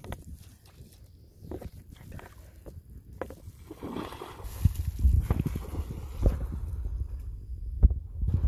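German Shepherd splashing through shallow water, running in and then wading and swimming. The splashing starts faintly and grows busy and louder from about halfway through.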